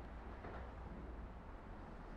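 Faint, steady outdoor background noise: a low rumble with light hiss and no distinct event.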